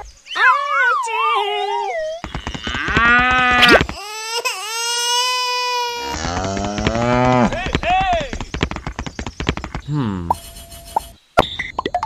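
Cartoon-style voice sound effects: a run of high-pitched whining, crying phrases whose pitch slides up and down, with a short falling tone about ten seconds in.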